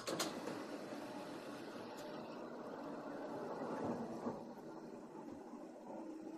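Steady background room noise that cuts in abruptly with a click out of dead silence, with a couple of faint clicks about two seconds in.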